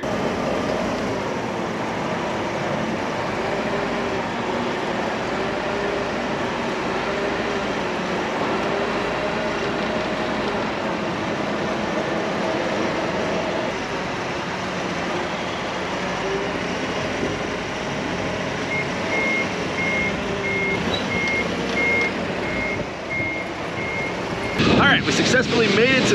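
Propane forklift running close by, its engine pitch rising and falling as it carries and lifts a crate. Partway through, its reversing alarm gives a run of about eight short high beeps, roughly two a second.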